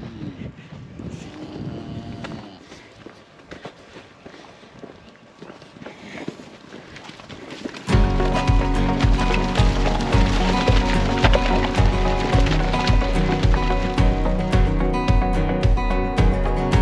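Cattle lowing twice in the first few seconds, over quiet outdoor sound. About eight seconds in, loud country-style music with guitar and a steady beat starts suddenly and takes over.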